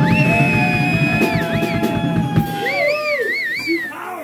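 Live band's drum kit playing hard, then stopping about two and a half seconds in. Over it, several sustained high tones slide up and down, ending in a wavering tone near the end.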